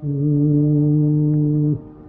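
A loud, steady held note, low in pitch, sets in suddenly and cuts off abruptly near the end, over a quiet steady drone.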